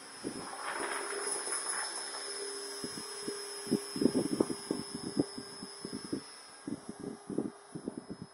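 450-size electric RC helicopter in flight, its motor and rotors giving a steady high whine over a lower hum, with a swell of rotor noise in the first couple of seconds.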